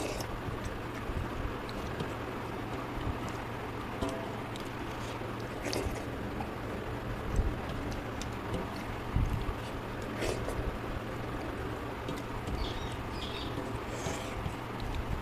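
Sounds of eating rice and fish curry by hand: fingers mixing rice on a metal plate, with a few soft clicks and smacks of chewing. Over a steady low background hum.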